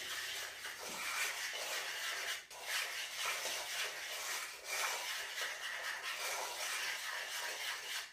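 A cooking utensil stirring and scraping in an electric tagine pot, in soft strokes about once a second over a steady high hiss.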